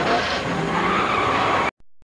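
Car tyres screeching in a skid, a loud, harsh noise that cuts off suddenly near the end.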